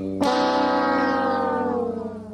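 Sad-trombone comedy sound effect: the long final 'wahhh' note, sagging slightly in pitch and fading out near the end, a jokey verdict on disappointing test results.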